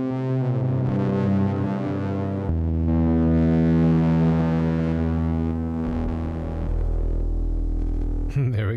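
Electric guitar processed through a Eurorack modular effects rack with an octave effect, giving thick, synth-like sustained notes. The pitch shifts to a new held note a few times: about half a second in, at about two and a half seconds, and again near six seconds.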